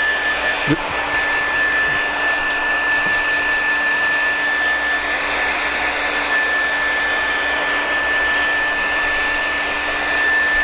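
Hair dryer running steadily, drying wet watercolour paint on paper: an even rush of air with a steady high whine.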